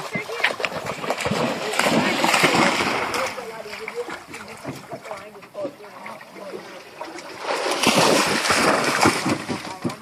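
A dog splashing through shallow water, with a long stretch of splashing at the start and another about eight seconds in.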